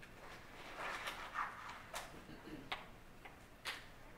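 A few sharp, small clicks spaced out in the second half, after a short stretch of faint rustling about a second in, over quiet room tone.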